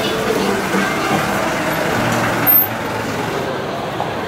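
Street noise with a large vehicle's engine running, and a short, loud hiss about two and a half seconds in.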